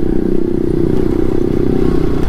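Yamaha R15 V3's single-cylinder engine running steadily at an even town cruising speed, about 30 km/h, mixed with wind and road noise.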